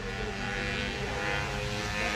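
A motor or engine drones steadily, growing a little louder.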